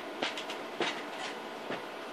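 A person getting up from a seat and moving off: three or four soft knocks and bumps, spread over two seconds, against a faint steady hiss.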